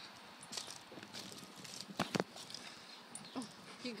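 A dog panting, tired from running hard at fetch, over a few footstep knocks on wooden deck stairs. Two sharp knocks about halfway through are the loudest sounds.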